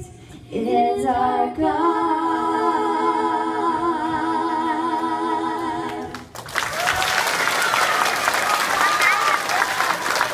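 A woman and two girls singing together into microphones with no instruments, ending on one long held note with vibrato that stops about six seconds in. The audience then breaks into applause.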